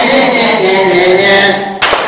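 A group of voices chanting the sing-song 'na-na-na-na-na-na-na' taunt in unison, with one sharp hand clap near the end.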